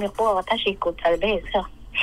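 A voice chanting Hmong kwv txhiaj sung poetry in drawn-out syllables with gliding pitch. It sounds thin, as over a telephone line, and stops shortly before the end.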